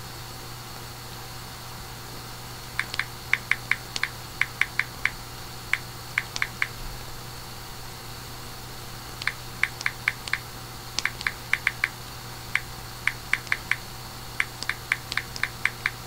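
Typing: bursts of quick, sharp key taps, several a second, with short pauses between bursts, over a steady low electrical hum.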